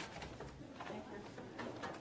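Footsteps on a hard corridor floor, with a sharp click at the start and a few quick steps near the end, over a low murmur of voices.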